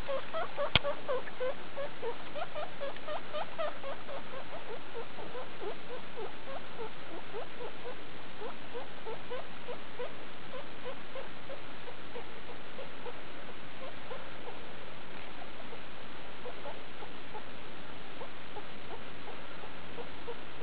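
Skinny (hairless) guinea pig pups squeaking: a steady run of short rising peeps, several a second, louder for the first few seconds and then softer. There is one sharp click about a second in.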